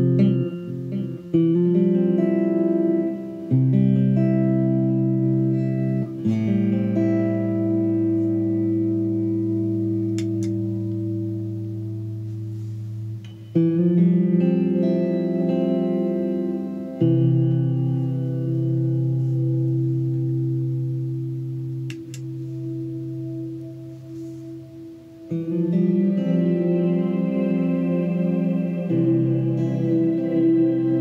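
Electric guitar played through effects pedals and an amp: sustained chords that each ring out for several seconds before changing to the next, about half a dozen changes in all.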